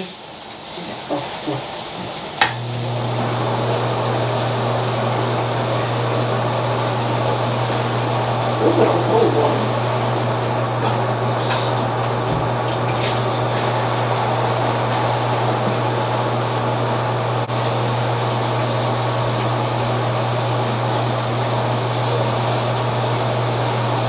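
Shower running: a steady spray of water that starts with a click about two and a half seconds in, with a low steady hum beneath it.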